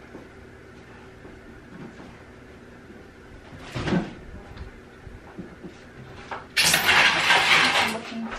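A glass reptile tank and its loose coconut-fibre substrate being worked by hand: a single knock about four seconds in, then a loud scraping rush for about the last second and a half.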